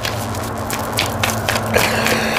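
A deck of tarot cards shuffled overhand in the hands: a steady run of soft flicks and cards sliding against each other.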